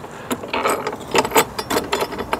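Ratchet wrench clicking in short irregular runs while the bolts of a metal pole clamp are tightened.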